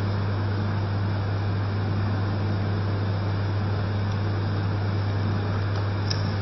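Steady low electrical hum with an even hiss over it: the background noise of the hall's sound system, unchanging, with nothing else happening.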